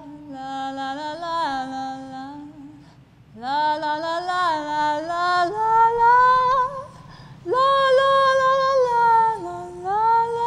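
A woman singing solo into a handheld microphone: three long phrases of held, gliding notes with short breaths between, each phrase pitched higher than the last.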